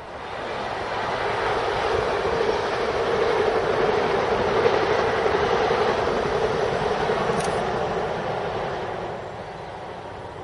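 A full-size passenger train passing, its running noise swelling to a peak midway and fading as it moves away.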